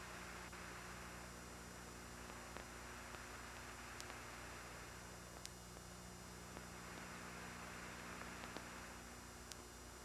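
Faint steady hiss and electrical mains hum of an idle audio line, with several faint clicks scattered through it.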